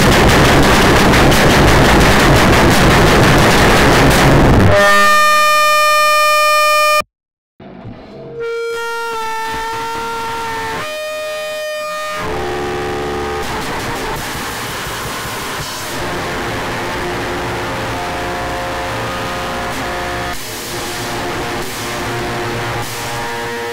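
Heavy, distorted band music: a dense wall of guitar and drums cuts off about five seconds in. It gives way to a single held tone with many overtones, then a brief silence just after seven seconds. Sustained droning tones and a quieter, steady noisy texture carry on to the end.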